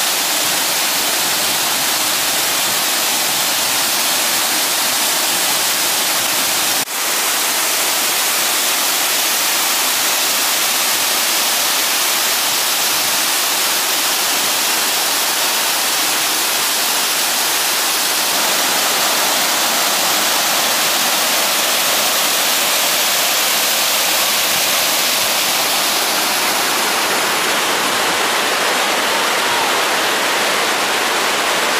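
Waterfall cascading over rock ledges: a loud, steady rush of falling water, briefly dropping out about seven seconds in.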